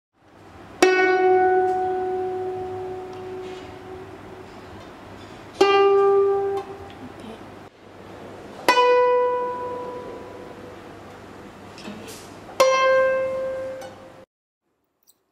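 Guzheng strings plucked one at a time: four single notes a few seconds apart, each ringing out and fading. Near the end come la and then ti, the ti made by pressing string 6 down on the left side of the bridge to bend it up a whole step.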